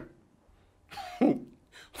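A man's single short cough about a second in.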